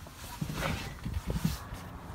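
Handling noise from a phone microphone being moved around inside a car's cabin: irregular soft knocks, bumps and rubbing, with no engine running.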